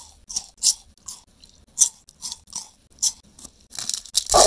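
Someone chewing freshly chopped pieces of chocolate bar, a soft crunch about two to three times a second.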